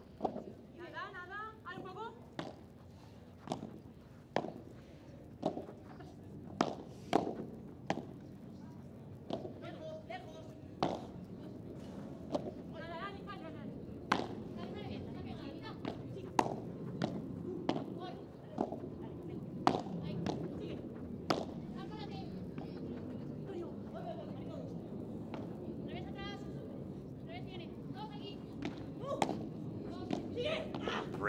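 Padel rally: the ball is struck by rackets and bounces off the court and glass walls, a sharp knock every one to two seconds, with a background murmur that grows louder about ten seconds in.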